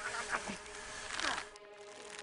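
Steady insect-like buzzing, with a couple of short gliding sounds over it.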